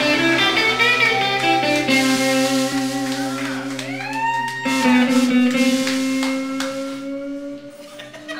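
Live blues-rock band playing, electric guitar leading with long sustained notes and a few upward bends. The music falls away near the end.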